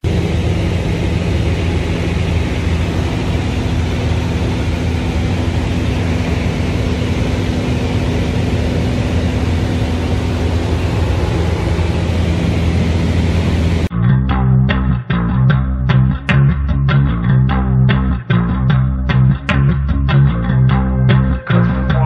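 Steady drone of a single-engine light aircraft's engine and propeller in flight, heard from inside the cabin, with a dense rushing noise and a low steady hum. About fourteen seconds in it cuts off abruptly and rhythmic guitar-and-bass music takes over.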